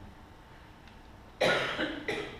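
A person coughing: one sudden, loud, harsh cough about a second and a half in, after a quiet stretch.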